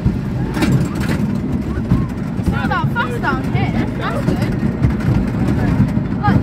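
Wooden roller coaster train running along its track: a loud, steady rumble with wind buffeting the microphone and a few clatters in the first second. Short high-pitched cries from riders come through the middle.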